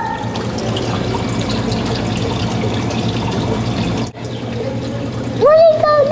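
Water trickling and splashing steadily in an indoor animal tank, over a low steady hum. A child's voice comes in near the end.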